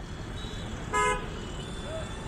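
A single short vehicle horn toot about a second in, over steady road and engine rumble.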